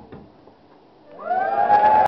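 Audience cheering at the end of a spoken-word performance: several voices break into long rising whoops about a second in and quickly grow loud.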